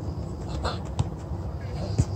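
Soccer ball being dribbled and kicked on a grass pitch. A sharp thud comes about a second in and another at the end, over steady low background noise.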